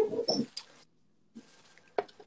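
A short high-pitched whine-like vocal sound lasting about half a second at the start, then faint room noise.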